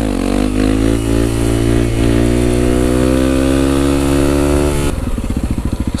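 Honda CRF 250 supermoto's single-cylinder four-stroke engine under way. The revs drop sharply right at the start, then the note holds and climbs slowly as the bike pulls in gear. About five seconds in it changes to a lower, pulsing sound.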